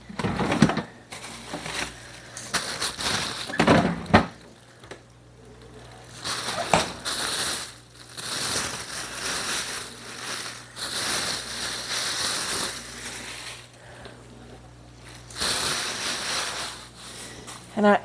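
Handling sounds as a head of broccoli is fetched and laid on a cutting board: several bursts of rustling noise, each a second or two long, with a few sharp knocks in the first seconds.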